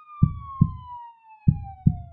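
An edited-in dramatic sound effect: one long whistle-like tone sliding slowly downward in pitch, over deep thumps that come in pairs like a heartbeat, about one pair every second and a quarter.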